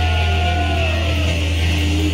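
Live rock band holding out a chord: a steady low electric bass note under electric guitar ringing, with slow downward-bending tones and little drumming.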